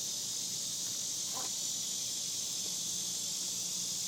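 Steady, high-pitched chorus of singing insects, unbroken throughout, with one faint short sound about a second and a half in.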